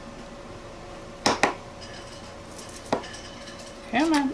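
Two quick sharp clicks about a second in, then one more near the end, as a small plastic paint bottle is handled on a tabletop, over a faint steady hum.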